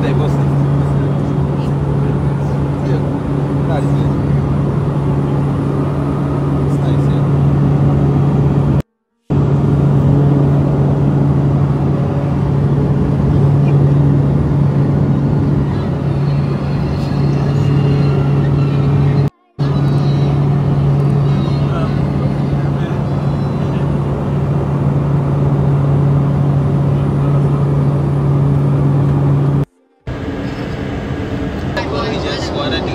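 Steady, loud drone of a small passenger plane's engines heard from inside the cabin in flight, a low hum with a noise hiss over it, broken by three brief gaps. Voices are faintly mixed in.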